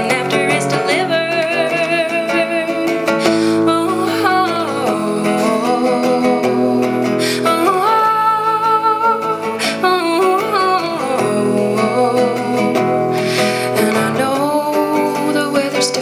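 A woman singing long held, wavering notes to her own acoustic guitar accompaniment, a solo folk song.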